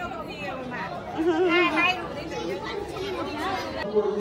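Several people talking at once in a crowd, overlapping voices of women and children with no single clear speaker.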